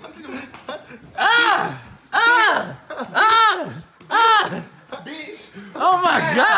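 A person's voice letting out four loud, drawn-out cries about a second apart, each rising and then falling in pitch.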